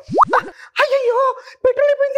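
Two quick upward-swooping comedy sound effects, a cartoon 'boing' type, near the start. From about a second in, a person's high-pitched, wavering voice follows.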